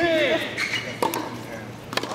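Tennis rally on a hard court: sharp ball strikes about a second apart, with short high squeaks between them.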